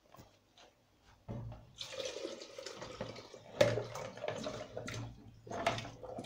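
Chopped vegetables and their wash water poured from a plastic bowl into a steel cooking pot: a splashing rush of water starting about a second in, with a few knocks as pieces land.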